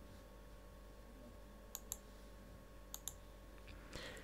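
Two quick double clicks of a computer mouse button, about a second apart, over a faint steady hum.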